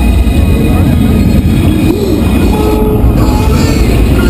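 Fountain show soundtrack played loud over outdoor loudspeakers: music and effects with a heavy, continuous low rumble.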